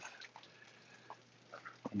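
Near quiet, broken by a few faint, scattered drips of water.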